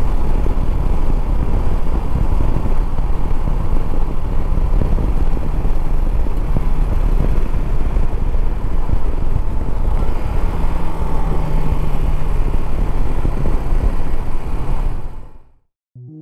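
Shineray SHI 175 motorcycle's single-cylinder engine running while riding, with wind rushing over the microphone. The sound fades out shortly before the end.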